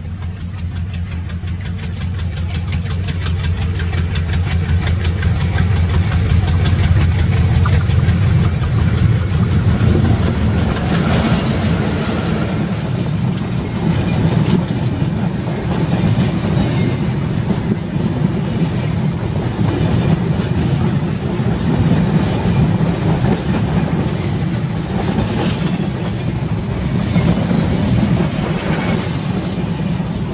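Diesel locomotive of an express passenger train approaching and passing close by, its engine rumble building and loudest about a third of the way in. Then the passenger coaches roll past with a steady rush and a regular clickety-clack of wheels over the rail joints.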